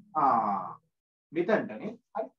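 A man's voice: a drawn-out 'aah' that falls in pitch, then a short burst of speech near the end.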